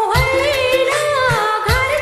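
Song with a backing track: an ornamented melody line full of pitch slides over a steady drum beat.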